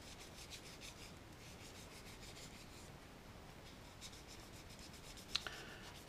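Faint quick back-and-forth rubbing of a fine sanding mesh pad polishing a clear plastic model part, in two spells of strokes. A short click sounds near the end.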